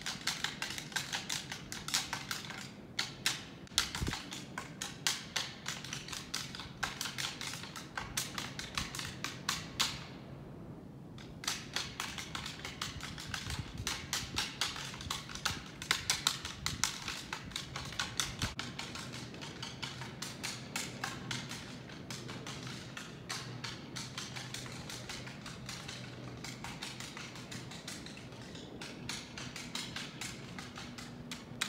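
Deer antlers being rattled together: rapid clacking in close runs, pausing briefly about ten seconds in. This is a rattling sequence meant to imitate two bucks sparring, to draw in a buck.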